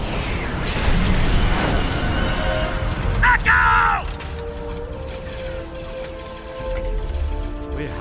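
Animated battle sound effects: rumbling explosions and heavy noise through the first half, with a short pitched sweep about three seconds in. After that, music with long held notes.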